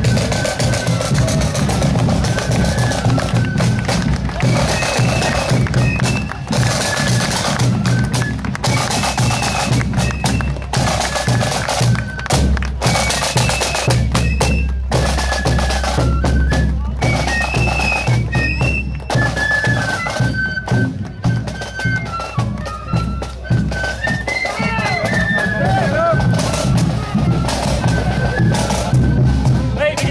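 Marching flute band playing a tune: flutes carry a stepping melody over a steady beat of drums, with a bass drum underneath.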